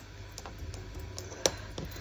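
Faint handling sounds of small paper craft pieces on a cutting mat: a few light clicks and taps, the sharpest about one and a half seconds in, over a low steady hum.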